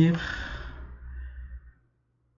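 The end of a man's spoken phrase, then a long breathy sigh into the microphone that fades out about a second and a half in.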